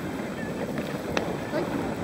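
Steady wind noise on the microphone, with one sharp click a little over a second in and a short spoken word near the end.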